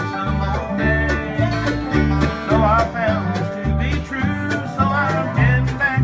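Bluegrass instrumental break: upright bass thumping out notes about twice a second under a strummed acoustic guitar, with a sliding lead melody line over the top.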